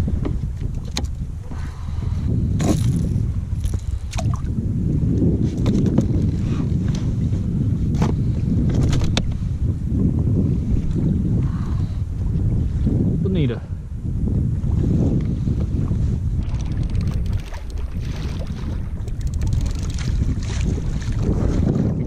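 Wind buffeting the microphone on a kayak at sea, a steady low rumble, with water washing against the hull. Scattered sharp clicks and knocks come from the tackle and the fish being handled aboard.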